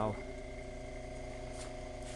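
Sole washing machine induction motor energised on a wrong capacitor wiring combination, giving a steady electrical hum as it struggles to turn.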